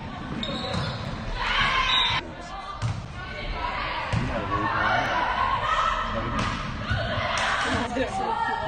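Volleyball being played in a large, echoing sports hall: sharp knocks of the ball being passed and hit, over players' calls and shouts.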